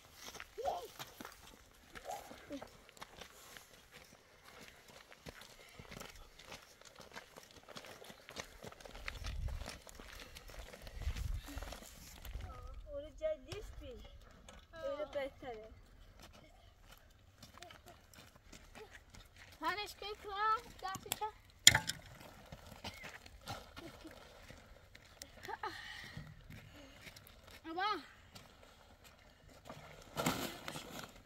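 Short, scattered stretches of people's voices talking outdoors, with a single sharp knock about two-thirds of the way through.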